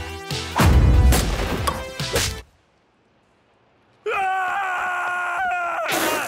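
Cartoon soundtrack: loud music with a crash-like hit about half a second in, cut off abruptly into silence after about two and a half seconds. About a second and a half later comes a long held voice-like tone that drops in pitch near the end.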